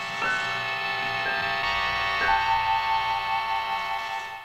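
Trailer score music: several struck notes, each ringing on, enter one after another, then settle into a held chord that rings out near the end.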